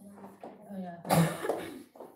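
Voices of a group of people in a room, with one loud cough a little over a second in.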